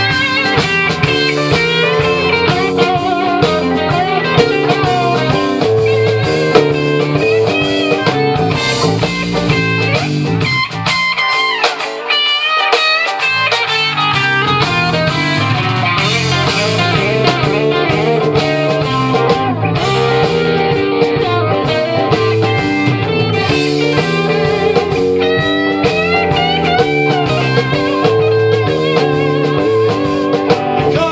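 Live blues band playing an instrumental break, with electric guitar over bass and drums. The low end drops out for a moment about eleven seconds in, then the full band comes back.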